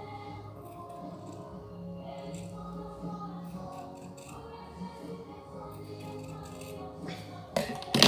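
Scissors snipping through the waxed board of a milk carton, cutting a wavy edge, under steady background music. Near the end comes a louder short clatter as the scissors are set down on the table.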